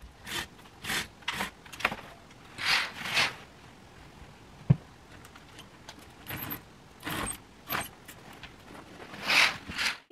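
Curtains being drawn by hand along their rail: a series of short sliding scrapes with some jangling, and one sharp click about halfway through.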